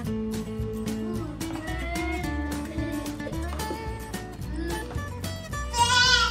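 Background music led by strummed acoustic guitar, with a steady beat. A child's high voice sounds briefly near the end.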